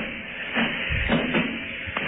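Muffled thumps and shuffling heard over a telephone line: rubber boots stomping through thick cow manure in a livestock truck's box.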